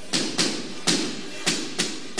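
Firecrackers going off: about five sharp, irregularly spaced bangs, each ringing on briefly in the echo of a large hall.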